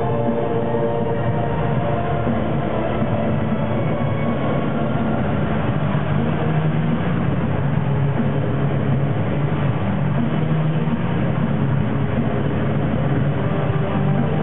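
Loud intro soundtrack from a club sound system: a steady, dense rumbling noise with low droning tones and no clear beat, heavily compressed by the recording.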